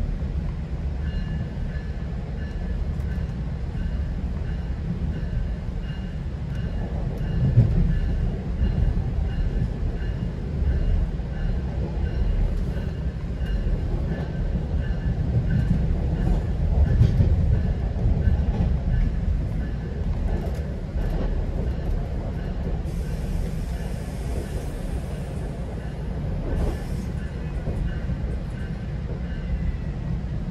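GO Transit commuter train in motion, heard from inside a passenger coach: a steady low rumble of wheels on the rails, swelling briefly about 7 and 17 seconds in, with a faint high whine behind it. A few short hisses come in the last several seconds.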